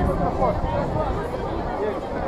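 Voices talking, with no clear words, over a general crowd background.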